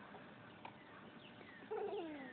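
Faint background with a few thin falling chirps, then a short wavering animal call near the end.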